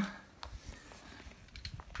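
Faint rustling of clothing and handling noise, with a few light clicks.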